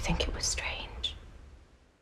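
A woman whispering a few breathy words in the first second, fading as a music bed dies away beneath.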